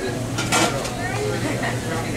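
Cafeteria serving-counter clatter: dishes and serving utensils clinking, with voices in the background over a steady low hum.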